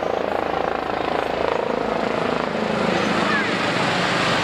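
Airbus H145M military helicopter flying low past, the sound of its rotor and engines dense and steady and slowly growing louder as it comes closer.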